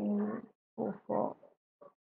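A person's voice making short, indistinct sounds rather than clear words: a held hesitation sound at the start, then two quick murmurs about a second in, and a brief one near the end.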